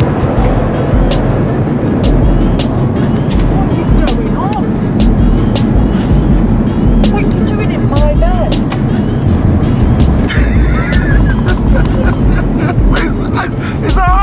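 Background music with a steady beat and a pulsing bass line.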